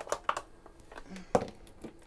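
A few knocks and clunks of a toaster being pushed into a narrow cabinet slot, the loudest a little past halfway through.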